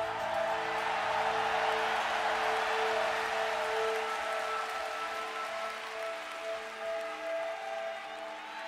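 Live rock concert music: a few steady notes held over a rushing wash of sound, with the bass dropping out about halfway through.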